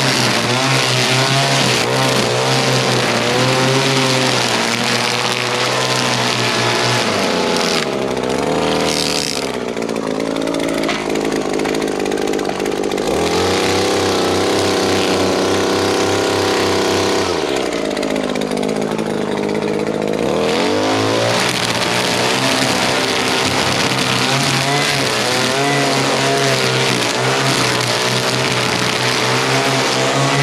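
Echo two-stroke string trimmer running at high speed cutting grass, easing down to a lower idle about eight seconds in, then revving back up to full speed about ten seconds later and cutting on.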